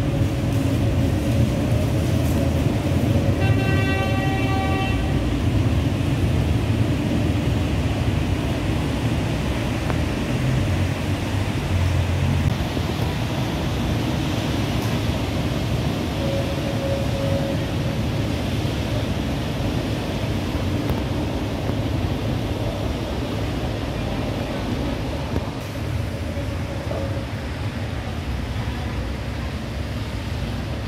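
Articulated tram running through a covered terminal, a steady low noise. A vehicle horn sounds once for about a second and a half a few seconds in.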